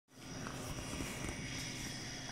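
Steady background hum and hiss with a few faint clicks, starting a moment after the recording begins.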